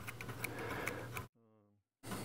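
Steel scribe point scratching and ticking against a file's edge, picking off soft epoxy squeeze-out: faint, irregular little clicks. About two-thirds of the way through, the sound cuts off abruptly to silence.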